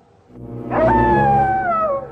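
A long drawn-out howl that rises sharply about two-thirds of a second in, then slides slowly down in pitch until near the end, over a low steady hum.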